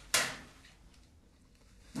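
A metal locker door shutting with a single sharp bang near the start, fading within about half a second.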